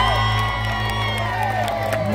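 Live gospel music holding a sustained chord, with a steady low bass note under it, while voices in the crowd cheer and whoop over it.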